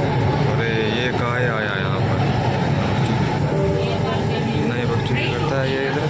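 Bengaluru metro train running, heard from inside the carriage as a steady low rumble, with voices over it.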